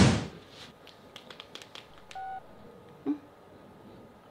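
A short whoosh at the start, then light taps on a smartphone screen, a brief keypad beep about two seconds in and a short blip just after three seconds.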